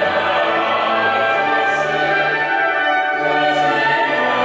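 Choral music: voices singing slow, held chords that change roughly once a second, with steady volume throughout.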